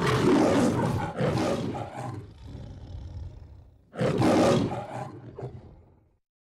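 The MGM studio logo's lion roar: a loud roar in two pulses at the start, a lower rumbling growl, then a second roar about four seconds in that fades out.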